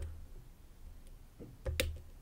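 Faint clicks of a hook pick working pin one inside the keyway of an Abus Extra Class padlock core, with two sharp clicks close together near the end.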